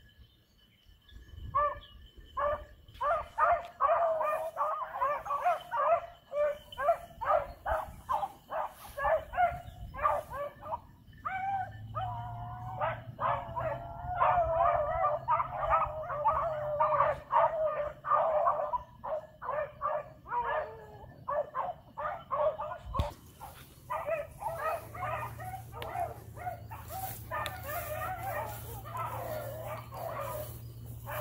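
A pack of beagles baying on a rabbit's trail: many overlapping short barks and longer drawn-out bays, starting about a second and a half in and going on without a break.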